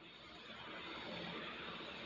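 Faint background noise, an even hiss with no tone or rhythm, that slowly grows a little louder.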